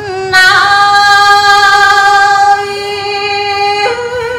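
A woman singing smot, Khmer Buddhist chanted verse, unaccompanied: she holds one long steady note for about three and a half seconds, then steps up to a higher note near the end.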